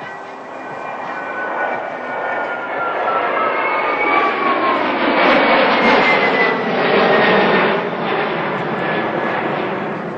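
Airbus Beluga's twin turbofan engines as the jet passes by: the engine noise builds, peaks about halfway through, and its whine falls in pitch as it goes past, then eases off near the end.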